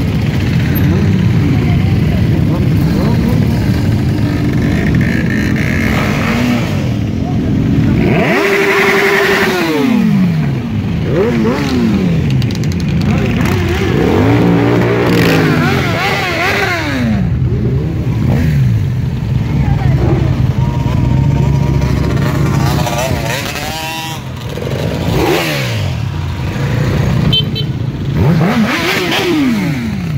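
A stream of motorcycles (adventure tourers, cruisers and sport bikes) riding past one after another, their engines running steadily. Several bikes' notes fall in pitch as they go by, most clearly from about eight seconds in and again near the end.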